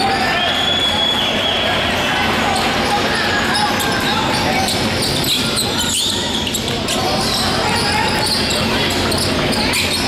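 Basketball being dribbled on a hardwood gym floor, with short high squeaks of sneakers and the voices of players and spectators echoing around a large hall.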